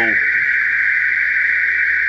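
Aftermarket car alarm going off: a loud, steady, high-pitched tone held without a break.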